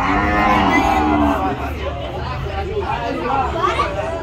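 One of the penned cattle moos once, a long call of about a second at the start, with people chattering in the background.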